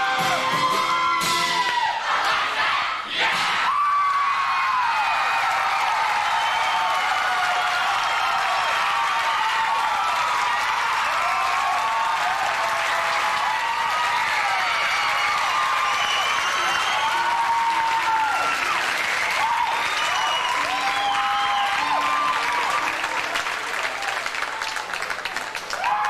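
A song ends on a held note about two seconds in, and a large audience breaks into applause and cheering with many whoops that carry on steadily.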